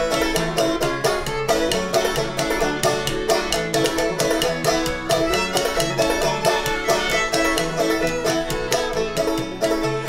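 Instrumental break of an old-time string band: open-back banjo, bowed fiddle and a cello plucked as a bass, playing at a brisk, steady beat without singing.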